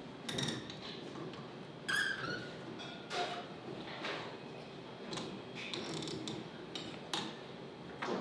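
A boom microphone stand being adjusted by hand, with a sheet of paper handled, giving a few faint scattered knocks and clicks and a brief squeak about two seconds in over quiet room noise.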